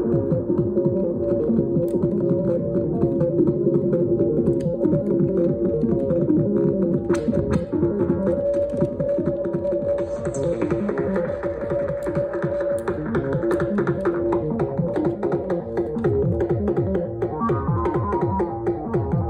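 Eurorack modular synthesizer playing a sequenced pattern: drum voices from a Queen of Pentacles drum module over a held oscillator tone from a Chainsaw voice module through a stereo filter. Knobs are being turned during the jam, and the sound brightens briefly about ten seconds in.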